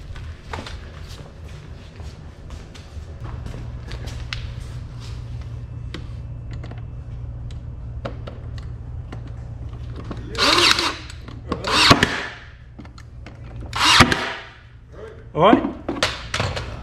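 A cordless drill-driver working into MDF stays, with a steady low motor hum and small clicks. Three loud, sharp bursts about a second and a half apart come near the end.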